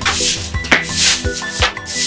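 Short bundle broom sweeping a porch floor in repeated brisk swishes, about two strokes a second, over background music.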